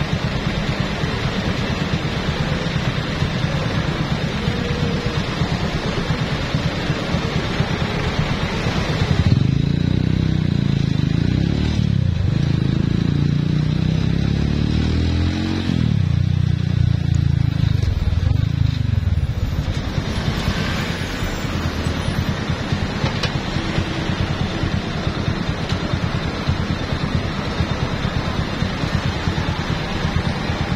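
Wind rushing over the microphone from a ridden motorcycle, its engine running underneath. From about nine seconds in to about twenty, the engine comes through more strongly, rising in pitch and dropping back three times as it pulls away through the gears.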